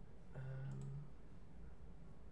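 A faint computer mouse click as a web link is opened, over a short hesitant "um" from a man and a steady low hum.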